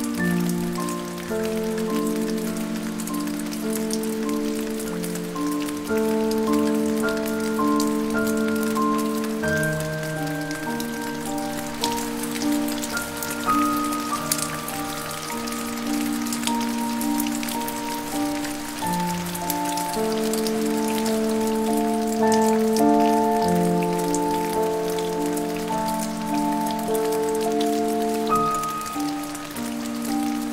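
Steady rain mixed with slow, soft piano music of long held notes.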